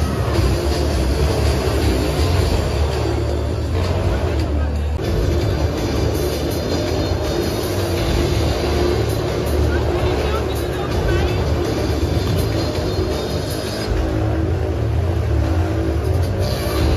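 Loud amplified circus show music with a heavy, steady bass, over the running engine of a stunt motorbike in the ring.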